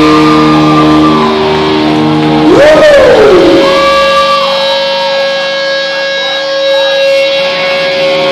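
Live rock band with loud electric guitars holding ringing, sustained notes, and one swooping note that rises and falls about three seconds in. The low end of the bass and drums falls away in the second half, leaving the held guitar tones.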